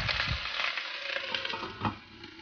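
Clams in their shells sizzling and clattering in a hot wok as scallion and ginger are tossed in, with a few sharp knocks. Near the end, a metal knock as the stainless-steel lid is set back on the wok.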